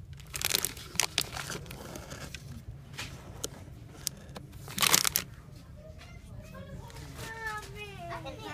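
Crinkling and rustling handling noise in several short bursts, the loudest about five seconds in. Near the end a young child's high voice chatters, rising and falling in pitch.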